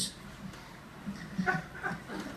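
Quiet room tone, then near the end a few short, faint, high-pitched vocal sounds from a person.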